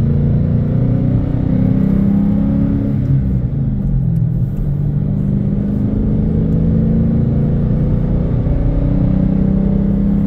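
Car engine and tyre noise heard from inside the cabin while driving, a steady low drone. The engine note dips about three to four seconds in, then steadies again.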